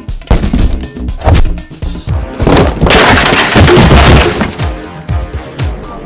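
Added fight sound effects over background music: a quick series of punch impacts, then a longer crashing impact that fades away.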